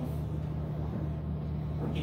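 A steady low hum with faint hiss and no speech: the room tone of a hall.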